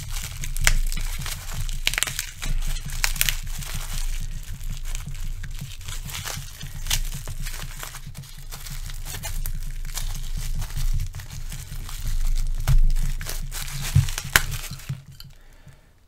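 Clear plastic packaging crinkling and crackling as it is pulled apart and unwrapped by hand, with many sharp irregular crackles. The sound dies away about a second before the end.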